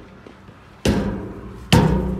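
Two loud thumps about a second apart, the second followed by a short low ringing hum: a person bumping against a playground slide while sliding down it, phone in hand.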